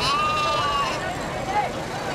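A young goat kid bleats once, a high, held call just under a second long, over the chatter of a crowd of people.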